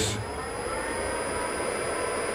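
3 kW air-cooled GMT milling spindle running under a Fuling inverter: a steady motor and cooling-fan whine with a thin high-pitched tone.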